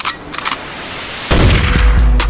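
Edited-in sound effects over a music track: a few sharp hits, then a swelling hiss that breaks into a loud, deep beat after about a second.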